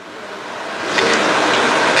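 Rain: an even rushing hiss that swells steadily louder over about two seconds.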